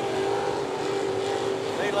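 Sportsman dirt late model race car engines running at speed on the track, a steady held engine note that dips slightly and then climbs near the end.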